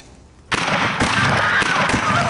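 A small click of a hand-held button, then about half a second later a sudden loud blast of film explosion effects as people are blown apart, with a second hit a moment later and dense splattering after. High wavering cries begin near the end.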